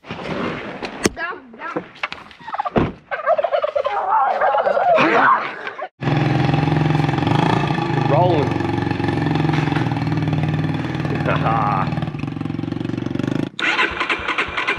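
Small dirt bike engine idling steadily, starting abruptly about six seconds in. Before it come scattered knocks and wavering voice-like calls.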